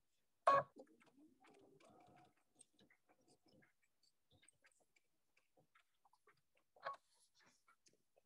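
Near silence with a few faint, scattered ticks from a sewing machine stitching slowly. A short louder sound comes about half a second in, and another near the end.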